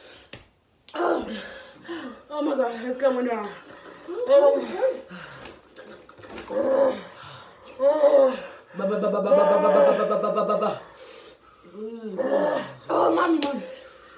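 Women's wordless pained vocal sounds: short groans and cries in bursts, with one long held moan about nine seconds in, as the burn of an extremely hot gummy bear sets in.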